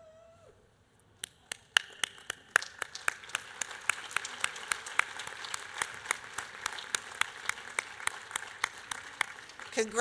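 Audience applause that begins with a few separate claps about a second in and fills out into steady clapping, with some sharp close claps standing out, until it dies away near the end.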